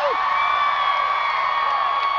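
Concert crowd singing along and cheering, with one voice holding a long, high sung note through most of it.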